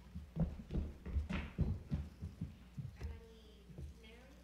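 Children's footsteps on a stage floor: a run of irregular low thuds as they step and shuffle about.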